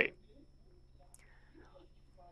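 A woman's speaking voice ends a word, then pauses in near silence: faint room tone with a soft, faint sound about a second in.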